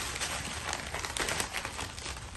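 Gift-wrapping paper rustling and crinkling as hands pull it off a box, with small irregular crackles.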